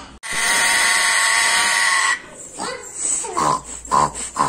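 African grey parrot making its angry growl: one loud, steady sound of about two seconds that cuts off, then a run of shorter calls rising and falling in pitch.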